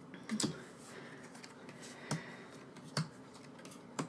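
Photocards being set down one by one on a tabletop and shuffled in the hand, making a few light, separate clicks and taps against a quiet room.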